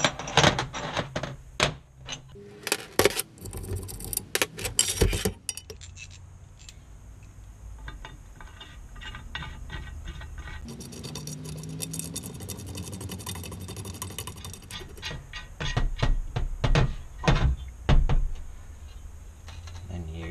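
Steel bolts and studs clinking and rattling against an aluminum engine adapter plate as they are handled, pulled out and slid through its holes. There is a quick run of clinks a few seconds in and more handling knocks near the end.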